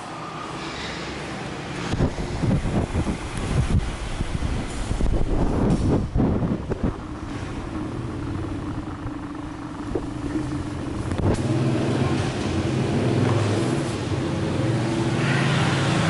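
A motor vehicle engine running with a steady low hum that grows louder in the second half, after an uneven low rumble in the first half.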